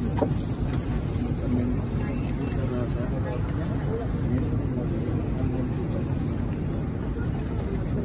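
Steady low rumble of an airliner cabin's background noise during boarding, with indistinct chatter of passengers standing in the aisle.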